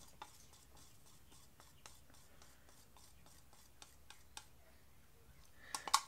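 Faint, irregular scraping of a stirring stick against the inside of a plastic paint cup as the last of the paint is scraped out, with a sharper click near the end.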